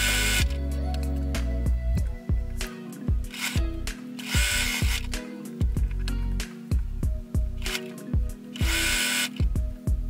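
Sewing machine running in three short bursts about four seconds apart, each a quick seam across a small pair of fabric scraps being chain-pieced, with background music underneath.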